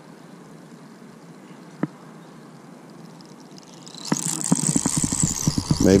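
A child's spincast reel being cranked: a high, whining whir with fast small ticks starts about four seconds in, the line winding back onto the reel. Before that there is faint steady hiss and a single sharp click.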